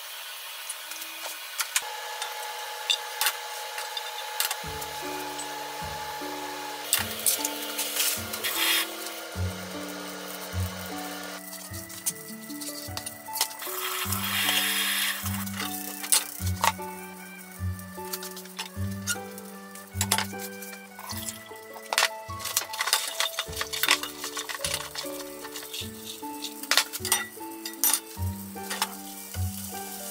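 Food sizzling in oil in a square tamagoyaki pan, with sharp clicks and clinks of a utensil against the pan; the sizzle swells briefly about halfway through. Background music with a low melodic line comes in about four seconds in.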